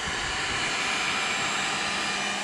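Mikaso electric heat gun running steadily: a constant rush of blown air over a steady motor hum.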